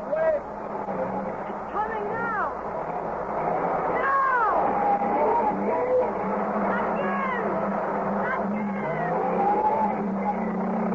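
Radio-drama sound effect of a car engine running hard while its wheels spin in sand, with a steady low hum and several whines that rise and fall.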